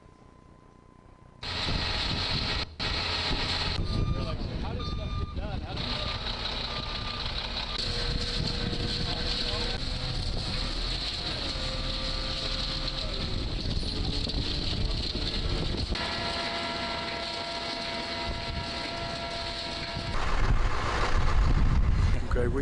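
Site sound from a concrete-pouring demonstration, played back over room loudspeakers: a concrete mixer truck running, with crew voices and machinery tones. It cuts in abruptly after about a second and a half of quiet room tone and grows louder near the end.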